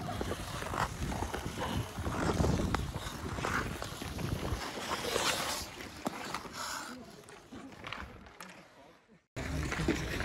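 Ice skate blades scraping and gliding on rink ice, with wind rumble on the phone microphone and faint voices. The sound fades towards the end and drops out for a moment just before it comes back.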